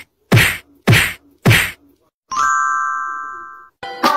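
Edited-in soundtrack: three hard percussive hits with a deep thump, evenly spaced about 0.6 s apart, then a bright held chime that fades away over about a second and a half.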